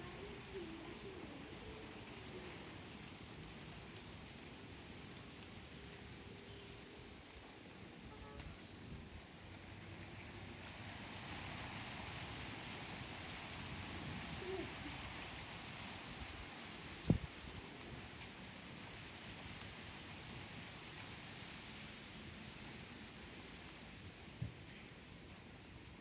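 Wind rustling garden foliage: a faint, steady hiss that grows louder for about ten seconds in the middle, with one sharp click about two-thirds of the way through.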